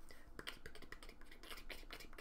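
Faint, quick, irregular clicking and light tapping, several clicks a second.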